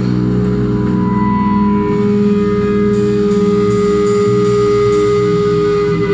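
Live band music with electric guitars: a slow passage of long held notes over a steady low drone.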